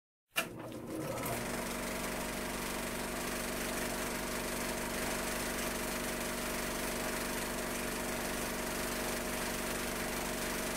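Film projector running: a steady mechanical whir and clatter that starts with a click just under half a second in and carries on evenly.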